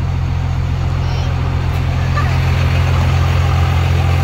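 Dodge Ram pickup's engine idling with a steady low drone, heard from inside the cab.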